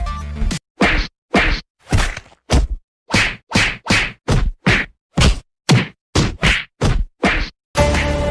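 Whack sound effects dubbed over a beating with sticks: about fifteen sharp hits, roughly two a second, with dead silence between them.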